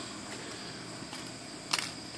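Steady hiss of a fan blowing over the workbench, with a faint steady high whine; about 1.7 s in, a brief rustle as a bent paper clip is picked up.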